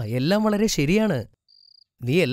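A voice speaking for about the first second, then, in the pause, a short high cricket trill from the background ambience.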